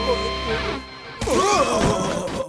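Action background music from an animated fight, with two short vocal cries from the robot henchmen as they are knocked down.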